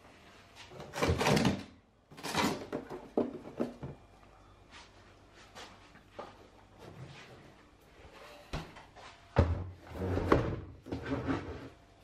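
A chest freezer lid is opened and a plastic cooler holding a block of part-frozen water is lifted out. Bursts of handling noise, rubbing and knocks, with the loudest knocks near the end.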